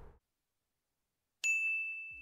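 Dead silence, then about a second and a half in a single ding sound effect, one bright ringing tone that starts sharply and slowly fades.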